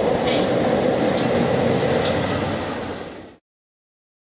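Class 47 diesel locomotive running through a station, a steady loud engine and rail noise with a few light clicks from the wheels, which cuts off sharply about three and a half seconds in.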